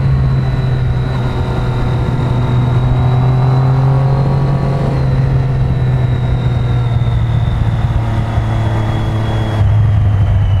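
Motorcycle engine running at a steady cruise, heard from the rider's seat, with a low steady note and its overtones that drops slightly near the end.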